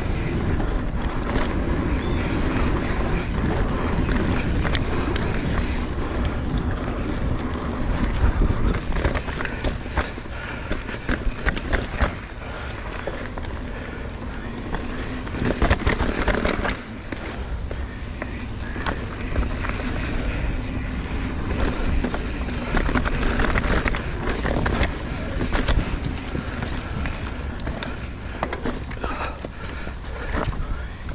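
Mountain bike being ridden over a dirt singletrack: steady tyre rumble and rushing noise, with rattles and knocks from the bike over rough ground, thickest about a third of the way in and again around halfway.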